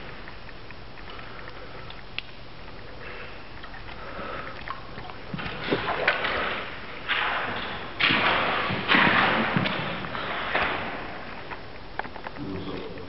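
A series of splashes and sloshes in shallow standing water, starting about halfway through and loudest a little after that, with a few knocks mixed in.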